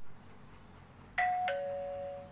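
Two-tone doorbell chime: a higher "ding" about a second in, then a lower "dong", each note ringing on.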